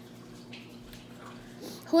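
A pause between sentences: faint, even room noise with a brief soft hiss about half a second in. A woman's voice starts again at the very end.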